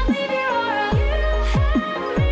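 Background music: a sustained melody over deep bass, with short falling bass hits every half-second to second.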